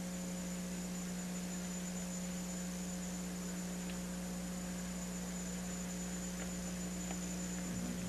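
Steady electrical hum on the recording, a constant low buzz with a faint high whine over background hiss.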